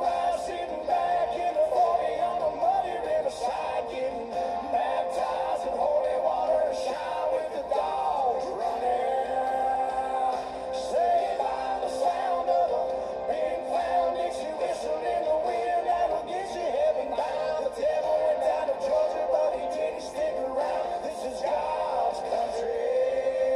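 Country band music with a male lead singer and acoustic guitars.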